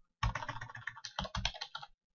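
Computer keyboard typing: a quick, continuous run of keystrokes that starts a moment in and lasts almost two seconds.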